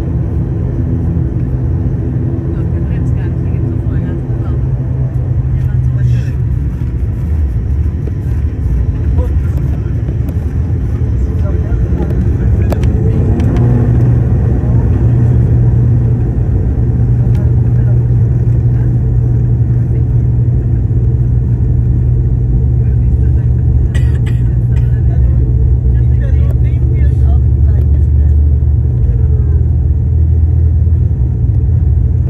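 ATR 72's twin Pratt & Whitney PW127 turboprop engines and propellers heard inside the cabin while the aircraft taxis: a steady low drone. About 13 s in, the pitch shifts, and after that the drone is louder and deeper.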